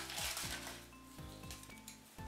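Small tiles clinking lightly against one another and the bowl as a hand rummages through them and draws one, over soft background music.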